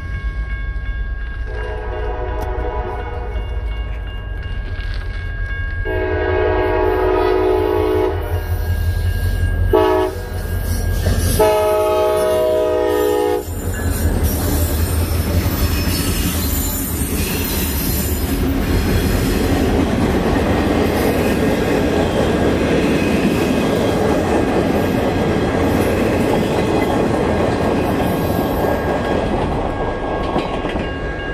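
Lead CSX locomotive's air horn sounding the grade-crossing signal, long, long, short, long, over the steady ringing of the crossing bell. The horn stops about 13 seconds in and the freight train passes close by, a loud, steady rush of wheel and rail noise.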